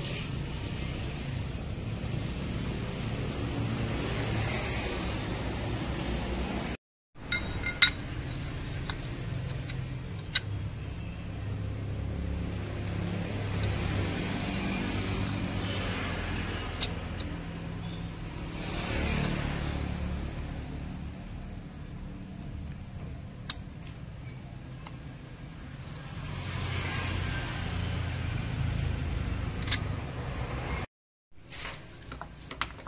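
Steady hum of vehicle engines and road traffic, swelling and fading several times as vehicles pass. A few sharp metallic clicks come from a diesel piston and its rings being handled, and the sound cuts out briefly about seven seconds in.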